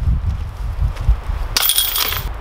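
A putted disc striking the metal chains of a disc golf basket, the chains jingling briefly about one and a half seconds in as the putt drops in for a birdie.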